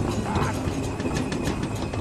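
Film soundtrack excerpt: a busy clatter of small clicks, knocks and creaks over a low hum, with no speech.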